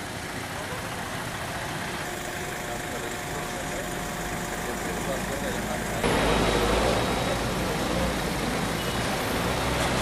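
Car engines running in street traffic, with people talking in the background. The sound gets suddenly louder and deeper about six seconds in.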